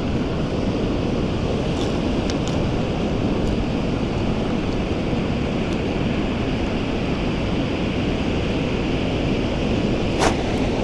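Steady rushing noise of wind on the microphone mixed with ocean surf, unchanging throughout, with a few faint ticks in the first few seconds.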